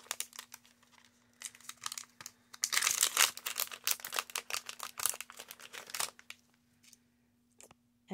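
Small clear plastic resealable bag crinkling as it is handled and pulled open. Scattered clicks come first, then a dense stretch of crackling from about three to six seconds in, thinning to a few ticks near the end.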